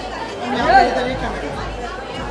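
Indistinct talking and chatter from people nearby, with a large-room feel.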